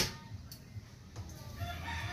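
A rooster crowing faintly in the background, starting a little past halfway. There is a sharp click right at the start.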